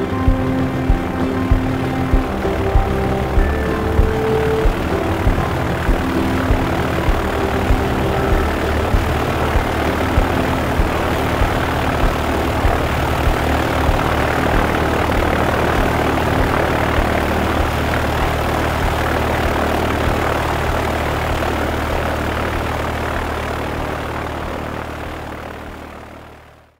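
Background music with a steady beat fades out over the first several seconds while an aircraft engine drone swells, is loudest a little past the middle, and dies away at the end.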